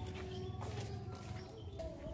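Faint outdoor background of birds calling, with a steady low rumble underneath.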